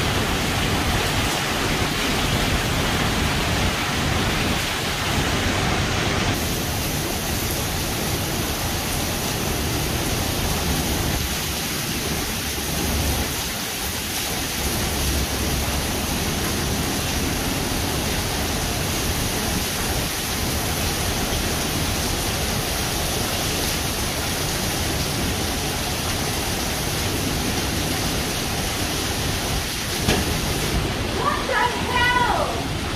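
Heavy rain falling steadily on pavement: a dense, even hiss of downpour.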